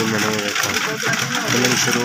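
People talking: voices throughout, with no other clear sound standing out.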